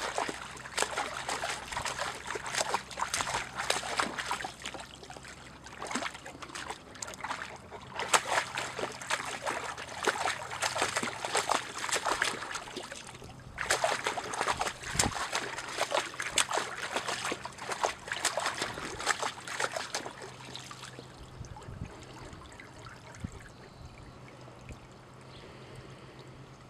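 A Great Pyrenees dog splashing with its muzzle down in a shallow muddy puddle: long runs of quick splashes and slosh, with brief breaks about six and thirteen seconds in, dying down after about twenty seconds as it lifts its head.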